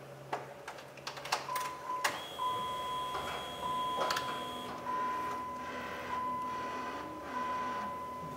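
Power side-mirror motor of a 2002–08 Dodge Ram running as the door's mirror switch is worked: a few clicks of the switch, then a steady whine that breaks off briefly about once a second as the mirror is driven one way and another. The new mirror is adjusting as it should.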